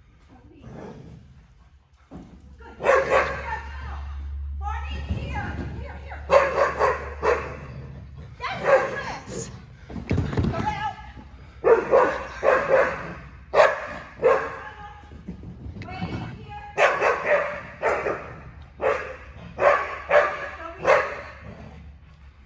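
A dog barking in repeated short barks, in clusters of several every few seconds, with a person's voice calling out among them.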